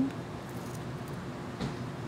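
A few faint, short clicks of small pebbles being handled and set into the cells of a plastic seed tray, over low room noise.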